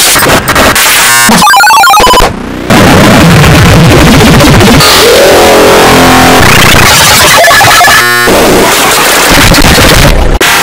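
Extremely loud, heavily distorted audio: music and noise clipped into a harsh wall of sound, briefly dropping a little over two seconds in.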